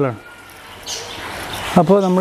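Speech: a person's voice narrating in Malayalam, breaking off just after the start and coming back near the end, with only faint background noise in the pause.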